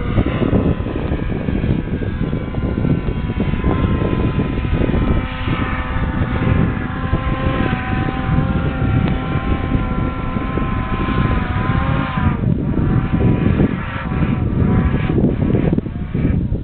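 Snowmobile engine running hard under load as it climbs, a steady droning pitch that sags and breaks up about three-quarters of the way through, over a rough rumble of the machine moving across snow.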